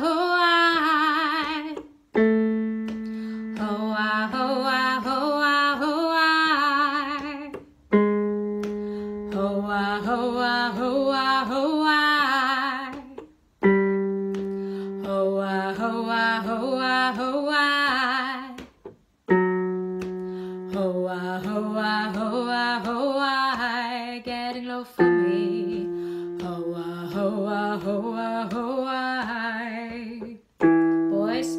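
Electric keyboard accompanying a vocal warm-up: a chord struck about every six seconds, each time a step lower, with a woman singing a quick 'ho-a' scale pattern over each chord. This is a descending sequence that takes the exercise down for lower voices.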